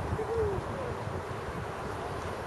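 Birds calling: two or three short, low hooting calls in the first second, over a low rumble of wind on the microphone.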